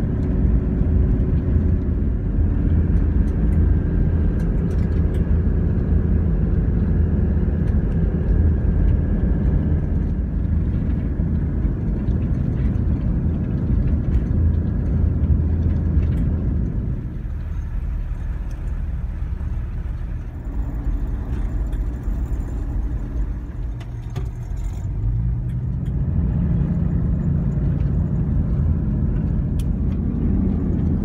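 Cabin noise inside a moving vehicle: a steady low rumble of engine and tyres on the road. It eases off for several seconds past the middle, then builds again with a rising engine note as the vehicle picks up speed.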